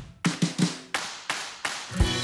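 Live band in a stop-time break: the full sound drops away, leaving a string of separate accented hits with short ringing decays, about eight in two seconds. The full band comes back in at the end.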